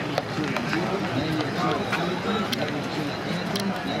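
People talking outdoors close to the microphone, their voices overlapping in lively conversation.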